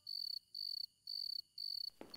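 Crickets chirping in a steady rhythm: a high, thin trill repeating about twice a second.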